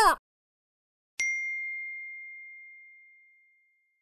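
A single bell-like ding about a second in: a sharp strike, then one clear high tone that fades away over about two seconds, as a logo sting.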